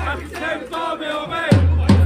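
Football supporters chanting together over a bass drum beaten with mallets at about two and a half strikes a second. The drum drops out for the first part and comes back about one and a half seconds in with two strikes.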